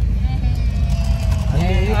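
Steady low rumble of a car's engine and road noise heard inside the cabin, with passengers' voices over it.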